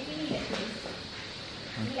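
A person's short, low hummed vocal sound, with a spoken "okay" at the end.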